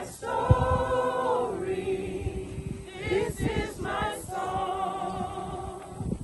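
A group of men and women singing together unaccompanied, holding long sustained notes with short breaks between phrases, typical of mourners singing a hymn at a graveside.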